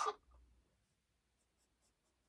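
A spoken word trailing off at the very start, then near silence with a few faint short ticks.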